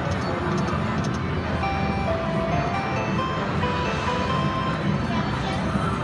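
Konami video slot machine playing its free-spin music, a run of short held electronic notes stepping in pitch as the reels spin and a win is added, over a steady casino din.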